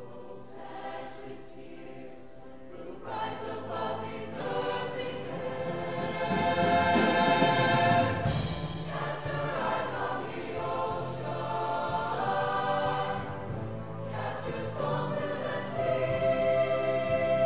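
Show choir singing sustained chords together, starting soft and swelling to its loudest about halfway through.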